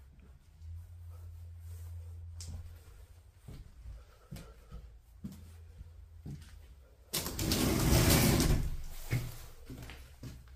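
A door scraping as it is pushed open: a rough rush of noise lasting about two seconds, late on, after scattered light knocks.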